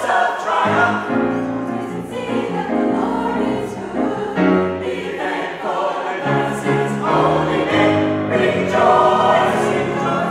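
Mixed choir of men's and women's voices singing a folk-gospel song in full chords, with the notes held and changing every half second to a second and swelling louder near the end.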